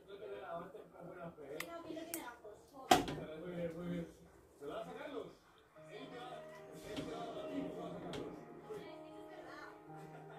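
Faint background voices and music, with held musical notes from about six seconds in. A single sharp knock about three seconds in is the loudest sound.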